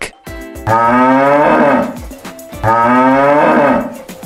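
A bovine lowing (mooing) twice, in two long calls of about a second and a half each, standing in for a yak's call, over light background music.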